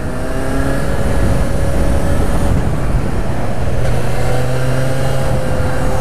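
Motorcycle engine running under way at a steady road speed, its note easing slightly, with wind rush over the helmet-mounted camera.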